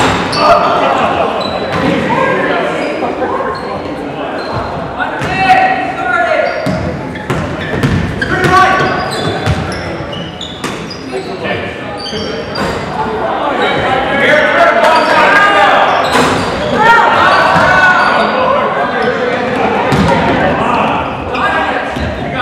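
A basketball bouncing on a hardwood court amid crowd and player voices shouting and chattering, echoing through a large gym.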